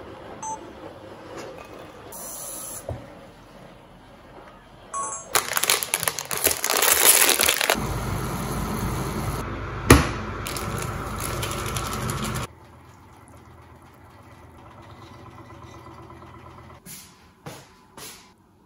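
Kitchen cooking sounds from a pan on the stove and noodle packets on the counter: a few light knocks and rustles, then several seconds of loud hissing that cuts off suddenly, with one sharp click near the middle. A quieter, steady stretch follows.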